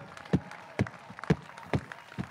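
Spectators applauding at the finish of a swim race: a steady patter of clapping with louder sharp claps about twice a second.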